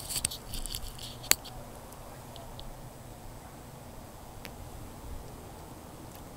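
Quiet background hiss with a few small clicks and rustles: a cluster just at the start, one sharper click a little over a second in, and a faint one later.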